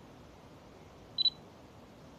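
A short, high electronic double beep a little over a second in, much louder than the faint background hiss.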